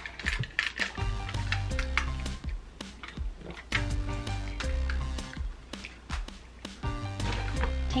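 Upbeat background music with a steady beat, a repeating bass line and bright plucked notes.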